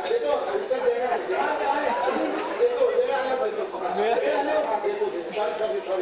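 Only speech: actors speaking their lines on a theatre stage, with the echo of a large hall.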